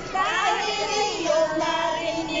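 Several women's high-pitched voices shrieking and laughing together in long cries. There are quick rising swoops near the start and a held note about halfway through.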